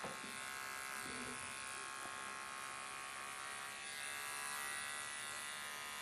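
Electric dog-grooming clipper fitted with a #15 blade, running with a steady buzz while trimming hair at the inside corners of a dog's eyes.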